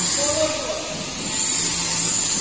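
Brief, faint talking over a steady high-pitched hiss.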